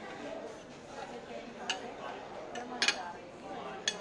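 Metal cutlery clinking on ceramic plates as food is cut and handled: a clink after about a second and a half, a louder pair close together near three seconds, and another just before the end. Underneath runs a steady murmur of voices.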